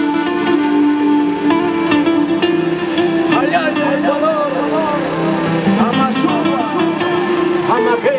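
Andean panpipes (zampoña) play a melody over a backing track. About three seconds in, the pipes stop and a man's voice comes in over the same backing track, singing in gliding phrases.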